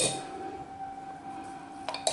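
A metal teaspoon clinks once against a glass jug at the start, ringing briefly. After that only a faint steady hum is left.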